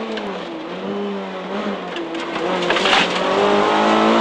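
Renault Clio Williams rally car's 2.0-litre four-cylinder engine heard from inside the cabin through a right-hand bend. It runs lower and quieter through the first half, then grows louder as the car accelerates out over the last second and a half.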